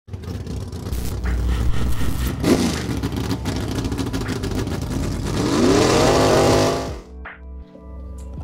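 Car engine revving over music. It ends in a long rev that rises and falls in pitch, then cuts off suddenly about seven seconds in, leaving only quieter music.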